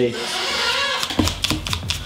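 A small stiff cleaning brush scrubbing hair out of the teeth of an Andis hair clipper's blade. A soft bristle hiss gives way, about a second in, to a quick run of brisk clicking strokes.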